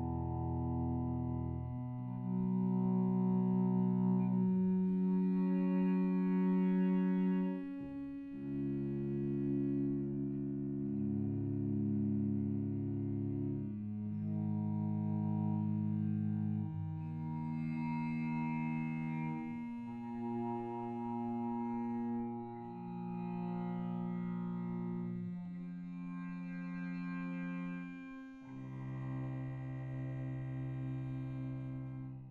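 Two cellos playing long bowed notes in overlapping pairs, stacking a chain of perfect fifths from C natural toward B sharp, each note held a few seconds against the next. Tuned as pure fifths, the chain shows up the Pythagorean comma: B sharp lands 24 cents sharp of C.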